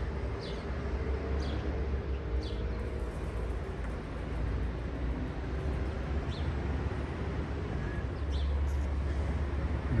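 Street ambience of road traffic: a steady low rumble of vehicles on the road, growing louder about eight seconds in as a vehicle comes close, with a few faint high chirps over it.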